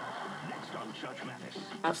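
Television playing in the room: voices and music. A close voice starts speaking near the end.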